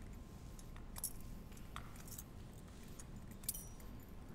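Thurible being swung, its metal chains and bowl clinking in a few sharp, bright chinks spaced irregularly about a second apart over faint church room tone.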